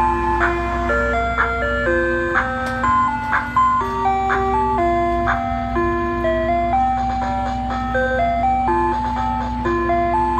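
Ice cream truck's electronic music chime playing its tinkly jingle, a melody of clear stepped notes, over a steady low hum.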